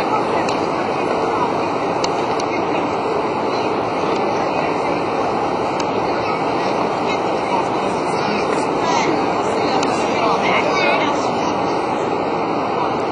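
Steady, indistinct chatter of a large crowd, many voices talking at once with no single voice standing out.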